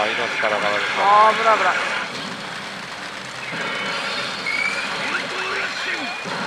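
Pachinko machine game audio during an 8-round bonus: a voice-like line in the first two seconds, then quieter electronic tones and short rising chirps, over the steady din of a pachinko parlour.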